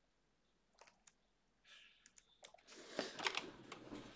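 A few scattered clicks of a computer mouse and keyboard, then, from about halfway through, louder rustling and clicking as someone pushes back and turns in an office chair to get up.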